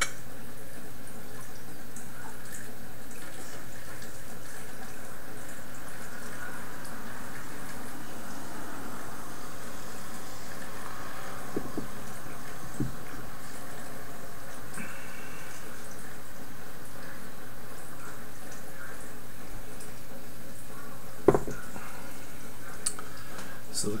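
Dark ale being poured from a bottle into a stemmed glass in one long, steady pour, with a single sharp knock near the end.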